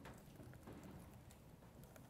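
Faint computer keyboard typing: scattered soft key clicks over low room hum.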